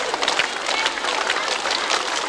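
Crowd applauding: many hands clapping in a dense, uneven patter, with voices mixed in.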